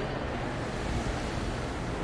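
Steady background noise of a shopping mall, picked up by a phone microphone while walking, with no distinct event standing out.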